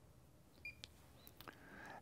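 Near silence: room tone, with a short faint high beep about two-thirds of a second in and a few faint clicks later on.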